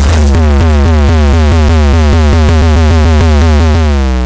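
Loud electronic music: a heavy sustained synth bass under a fast, rapidly repeating synth figure, starting to fade out near the end.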